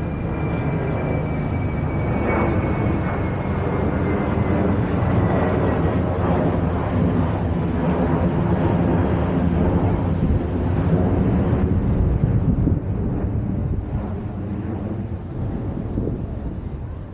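Low, steady engine rumble, with a thin whine that slides slowly down in pitch over the first several seconds.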